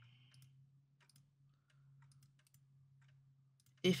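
Faint, scattered clicks of a computer mouse and keyboard, a few irregularly spaced, over a low steady hum.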